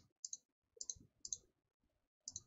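Computer mouse clicking faintly, three clicks about half a second apart, each a quick double tick.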